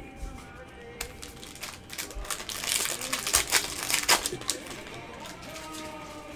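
A trading-card pack being opened and its cards handled: a quick run of crinkling, rustling and clicking, loudest in the middle seconds, over background music.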